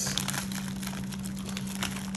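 Clear plastic resealable bag crinkling in irregular small crackles as it is handled in disposable-gloved hands, over a steady low hum.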